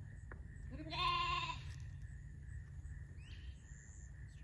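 A lamb bleats once, about a second in: a single wavering call lasting under a second.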